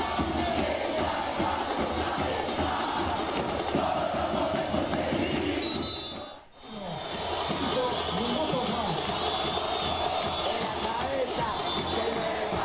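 Stadium crowd of football supporters singing a chant together, with drums beating under it. The sound dips away briefly at about six and a half seconds, then comes back.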